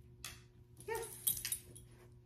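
A yellow Labrador retriever puppy gives one short, high-pitched whimper about a second in, followed by a few light clicks.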